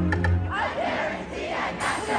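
Live K-pop band music with a heavy bass beat that drops out about half a second in, leaving a concert crowd shouting and cheering with rising and falling voices.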